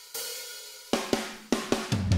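Drum intro of background music: a cymbal crash that rings and fades, then a run of sharp drum hits starting about a second in.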